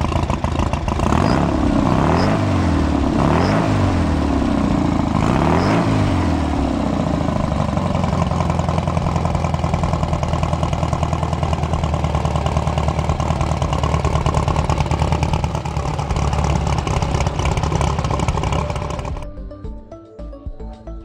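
Air-cooled 1835 cc VW flat-four engine revved by hand at the carburetor several times, the pitch rising and falling with each blip, then settling to a steady idle. The sound cuts off about a second before the end.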